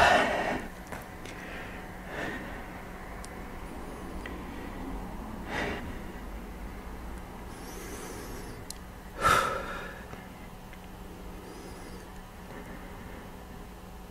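A person breathing hard with exertion while holding a plank: three short, forceful exhalations a few seconds apart, the loudest about nine seconds in.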